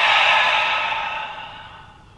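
A man's long, loud exhale through the mouth, the out-breath of a deliberate deep breath. It starts sharply and fades away over about two seconds.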